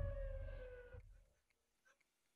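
A dramatic sound-effect sting: a low boom with a deep rumble and a slowly falling tone over it. It dies away about a second in, leaving near silence.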